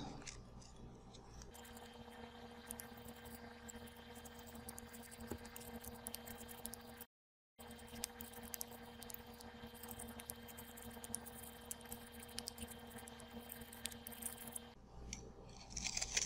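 Faint scraping and crunching of a soil knife trimming the end of a soft soil specimen flush with the edge of a metal trimming device, with scattered small clicks. A steady faint hum runs under most of it, and the sound drops out briefly about seven seconds in.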